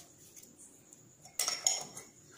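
Stainless steel pot clinking twice with a short metallic ring, about one and a half seconds in, as it is knocked during hand-mixing of the pakoda flour.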